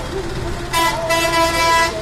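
Vehicle horn from road traffic honking twice: a short toot, then a longer steady blast of almost a second.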